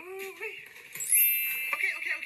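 A short vocal sound, then about a second in a bright, ringing chime sound effect that sweeps up in pitch and holds for about half a second.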